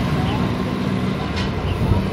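Street traffic noise with a steady engine hum from nearby motor vehicles, and faint voices in the background.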